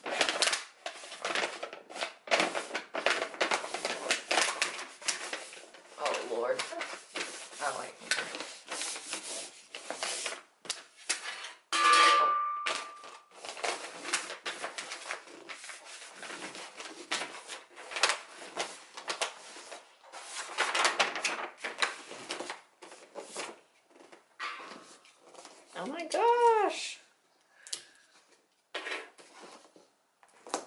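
Wrapping paper crinkling and rustling as it is pressed, smoothed and folded around a large box, in quick irregular crackles. Near the end a short pitched sound rises and falls once.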